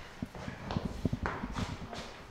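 Footsteps and scuffling of people moving about on a hard floor: irregular light knocks with some rustling.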